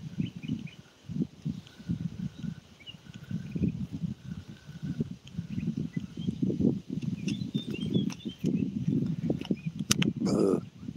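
Irregular low rumbling of wind buffeting the microphone by the water, with faint bird chirps in the background and a sharp click near the end.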